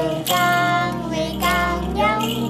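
A young girl singing a children's song in long held notes, over background music.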